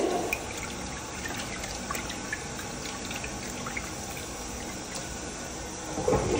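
Toilet flushing, water swirling and draining through the bowl with a steady rushing sound. A sharp knock comes right at the start.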